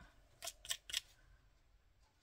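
Four short scratchy strokes close together in the first second, from a crepe-rubber glue eraser rubbed over the card stock to lift off excess glue.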